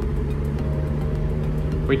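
Engine and road noise of a 1993 Acura NSX, heard from inside the cabin while it cruises at a steady speed. The engine holds a steady note with no revving.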